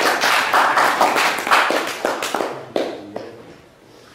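A small audience clapping, dying away about three seconds in.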